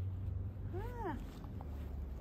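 A small terrier gives one short whine that rises and then falls in pitch, about a second in, over a steady low hum.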